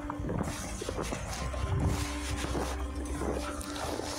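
Footsteps crunching in snow, about two steps a second, with low wind rumble on the microphone.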